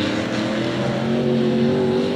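Several figure-eight race cars' engines running at speed around the track, a mix of steady engine tones that drift slightly up and down in pitch as the cars work through the turns.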